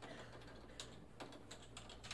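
Faint typing on a computer keyboard: a few scattered keystrokes.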